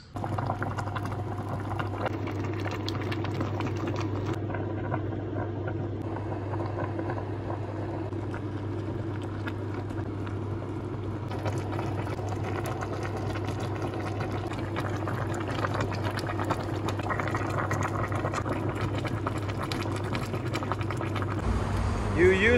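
Pork rib stew bubbling as it simmers in a pan, with a fine, steady crackle of bursting bubbles over a constant low hum.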